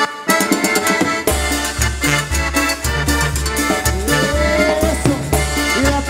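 Live cumbia band with the accordion leading in short, clipped notes. About a second in, the bass and drums come in on a steady dance beat.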